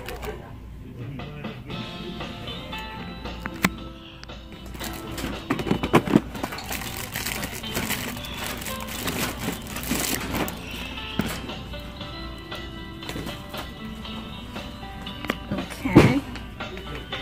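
Background music with indistinct voices in it. A few short knocks, about a third, a half and two-thirds of the way through, come from goods being shifted in a wire shopping cart.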